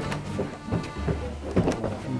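Several people's footsteps knocking irregularly on hollow wooden floorboards, over a low rumble.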